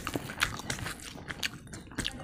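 Close-miked eating sounds: irregular wet clicks and smacks of chewing and of bare fingers squeezing rice and curry together.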